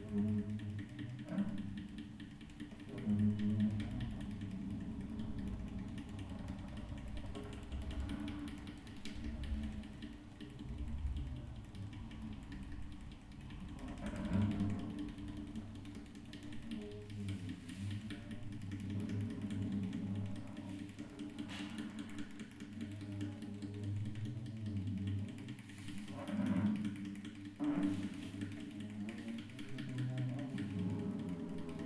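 Unamplified acoustic guitar played as a sound object rather than strummed: hands rub and scrape the strings and wooden body, drawing low humming resonances that swell and fade, mixed with creaks and short scrapes. A few sharper scrapes come about halfway through and near the end.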